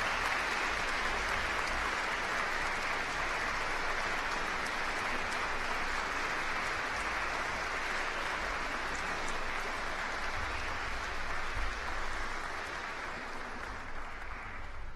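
Audience applause, steady and sustained, easing slightly near the end.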